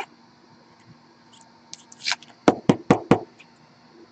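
Trading cards being handled on a tabletop: a brief rustle about two seconds in, then four quick, sharp knocks within under a second.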